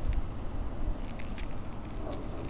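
Handling noise as the coiled Apple earbuds are turned over in the hand: soft rustling and a few light clicks over a low rumble.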